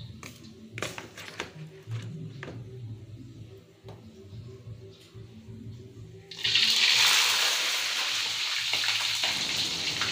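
Light clicks of metal tongs and utensils, then about six seconds in, a sudden loud, steady sizzle as purple eggplant pieces go into hot oil in a wok.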